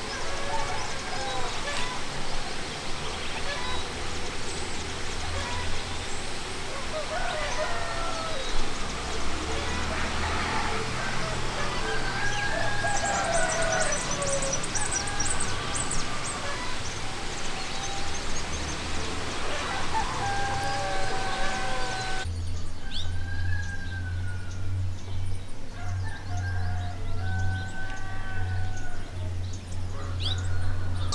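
Birds calling and a rooster crowing across rural countryside: many short separate calls. About two-thirds of the way through, the background noise changes abruptly and clear, repeated bird calls go on.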